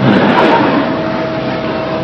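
Steady background noise with a faint steady hum running under it, and no speech.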